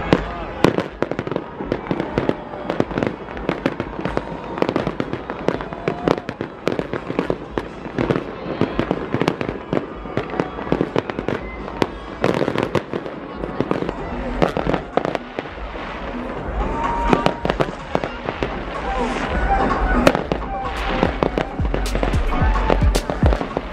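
Fireworks display going off overhead: many sharp bangs and pops in quick succession, with crowd voices and music underneath.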